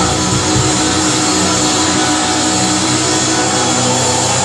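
Hard rock band playing live, loud and dense, with electric guitar to the fore and notes held over the bass and drums, in an instrumental stretch without vocals.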